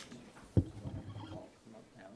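A single sharp, low thump about half a second in, as a man sits down at a table microphone, followed by faint, indistinct voices.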